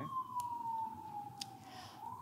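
Faint emergency-vehicle siren wailing: one slow tone that falls steadily in pitch, then starts rising again near the end. Two faint clicks sound within it.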